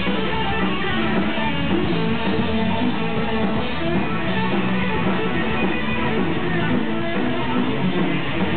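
Punk rock band playing live, with strummed electric guitar carrying the music at a steady, loud level.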